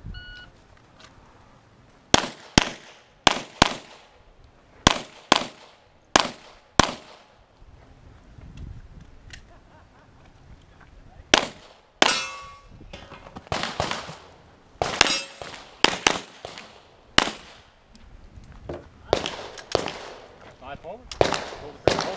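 A shot-timer beep, then a string of handgun shots, mostly fired in quick pairs with short pauses between the groups. A steel target rings after a hit about twelve seconds in.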